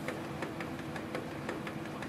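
Canon PIXMA G2070 ink tank printer running its print head cleaning cycle to clear clogged nozzles: a steady motor hum with scattered clicks.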